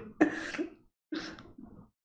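A man clearing his throat in three short bursts as his laughter dies down.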